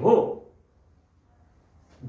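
A man's voice ending a word with a drawn-out vowel, then near silence for the rest of the time.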